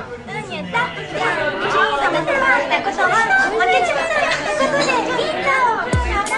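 Several people talking over one another: overlapping chatter in a room.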